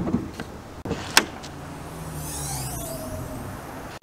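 Audi SQ8 hood release lever pulled inside the cabin: a few light plastic clicks, then a single sharp click about a second in as the hood latch lets go. After that a steady low hum and a soft hiss carry on.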